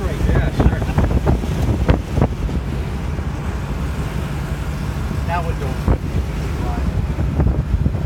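Open-top 1963 Ford Falcon Futura convertible under way at road speed: its 144 cubic-inch straight-six engine running with steady road noise and wind buffeting the microphone, and a few short thumps.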